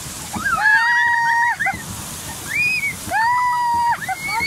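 Children's high-pitched shrieks, two long held screams and a short one between them, as fountain spray splashes down over the boat.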